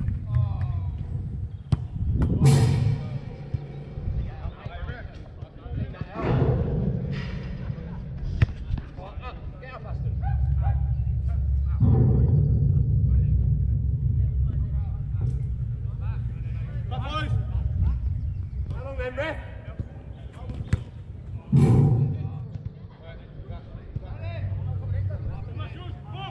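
Football being kicked during five-a-side play: several sharp thuds of boot on ball, the loudest about two and a half seconds in and again near the end, amid players' scattered shouts, over a steady low rumble.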